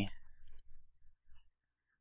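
A few faint computer keyboard keystrokes, about half a second in.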